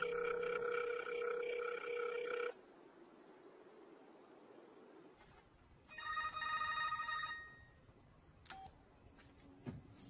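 Telephone ringing heard over the line as a call goes unanswered: two rings about six seconds apart, each a steady buzzing tone, with a couple of small clicks near the end as the line is picked up by voicemail.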